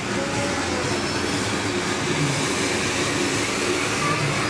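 A ground fountain firework (flower pot) burning and spraying sparks, giving off a steady, continuous hissing rush.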